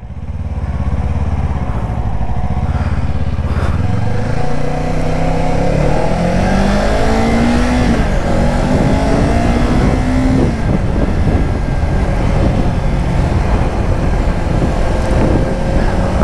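2024 Kawasaki Ninja 500's parallel-twin engine running low and steady, then pulling away: its pitch climbs in three steps, with gear changes between, over about six seconds before settling into a steady cruise.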